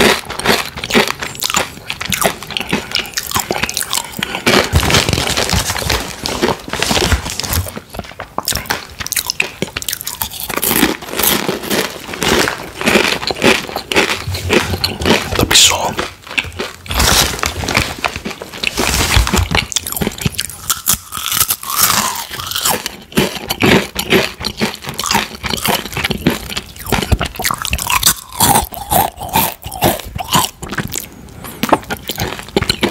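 Close-miked crunching and chewing of Takis Intense Nacho rolled tortilla chips: dense, rapid crisp crunches as the chips are bitten and chewed, with brief softer gaps.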